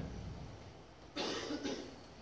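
A person's single short cough, a little over a second in.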